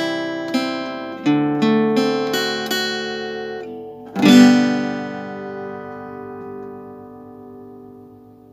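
Acoustic guitar playing a rock-ballad picking pattern: single notes plucked one after another across the strings, about three a second, then a strummed chord about four seconds in that rings out and slowly fades.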